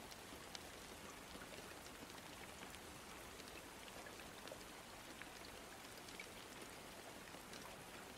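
Faint, steady rain ambience: an even hiss of rainfall with scattered light drop ticks.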